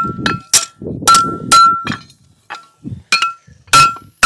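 Farrier's hammer striking a steel horseshoe on the horn of a Future 3 anvil to shape it, about seven blows, each ringing with a clear metallic tone. There is a short lull about two seconds in before the blows pick up again.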